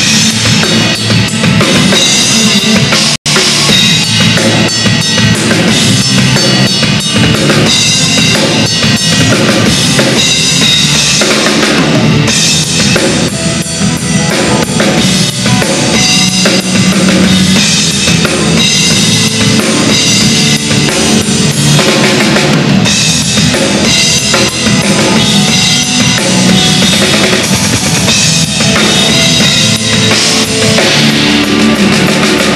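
Large Tama drum kit with two bass drums, played live: dense, fast patterns of bass drum, snare and cymbals without a break. The sound cuts out for an instant about three seconds in.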